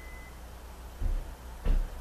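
Two dull, low thumps about half a second apart, the second the louder, over a steady low hum.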